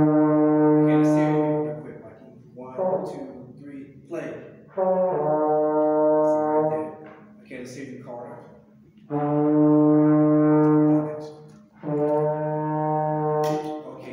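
A small brass section of trumpets, French horns and trombones holding their first note, a unison E-flat, four times in a row, each note sustained about two seconds with short pauses between.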